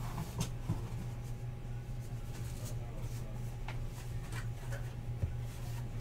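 Paper trading cards being shuffled and flipped through by hand: faint, scattered slides and clicks of card stock over a steady low hum.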